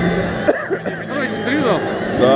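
People talking and calling out close by in a crowd, with music playing underneath.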